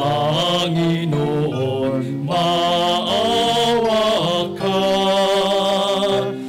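Cantors singing a slow liturgical chant over sustained keyboard accompaniment, in long held phrases with short breaths between them, about two and four and a half seconds in.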